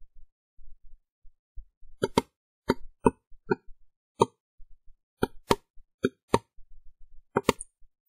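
Computer mouse clicking: about a dozen sharp single clicks, some in quick pairs, starting about two seconds in, as a colour is picked in an on-screen colour picker.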